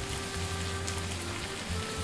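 Sliced onions, green chillies and curry leaves sizzling steadily as they fry in oil in a pan, with a spatula stirring them.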